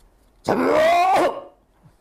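A man's loud, drawn-out character cry from behind a Balinese mask, one sustained call of about a second that rises in pitch and breaks off, demonstrating the voice given to a strong masked character in topeng dance.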